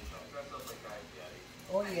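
Mostly speech: faint voice sounds, then a woman saying a drawn-out 'Oh' near the end. A soft low thump comes right at the start.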